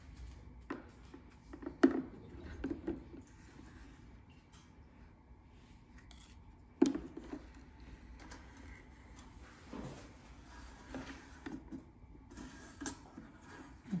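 A small metal baking pan and the plastic pusher tool knocking and scraping against the plastic slot of an Easy-Bake toy oven as the pan is pushed in: a scatter of faint clicks and knocks, the sharpest about two and seven seconds in.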